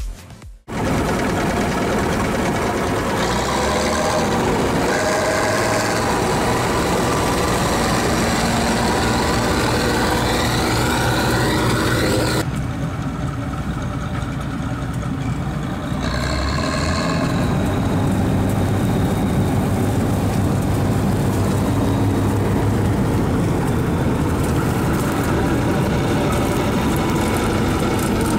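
Bizon combine harvester's diesel engine and threshing machinery running steadily. The sound cuts out briefly just after the start, and turns quieter and duller for a few seconds in the middle.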